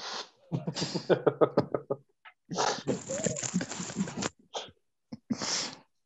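Several men laughing over a video call: a quick run of 'ha-ha' pulses in the first two seconds, then a breathier laugh from another line, and a short laughing exhale near the end.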